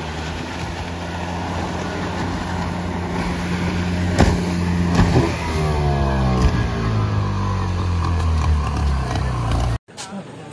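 Outboard motor of a small fibreglass fishing boat running steadily, then falling in pitch as it throttles down, with two sharp knocks about four and five seconds in. It cuts off suddenly just before the end.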